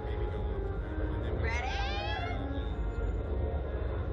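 Wind buffeting the ride camera's microphone as a steady low rumble, with one high-pitched squeal from a rider about a second and a half in that slides down in pitch.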